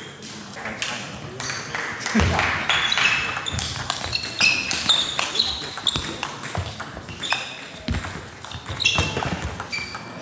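Table tennis rally: a plastic table tennis ball clicking sharply off bats and table, hit after hit at an uneven pace, with more ball hits from other tables and voices in the background.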